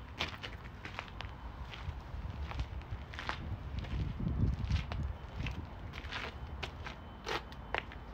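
Footsteps crunching on loose gravel, irregular steps, with a low rumble about halfway through.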